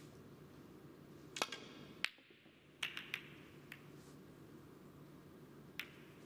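Snooker shot: the cue tip strikes the cue ball and the hard resin balls click against each other and the cushions. There are sharp single clicks about one and a half and two seconds in, the second the loudest, then a quick cluster of clicks around three seconds and one more near the end.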